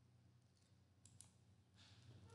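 Near silence: faint room tone with a low hum, and two faint clicks a little over a second in.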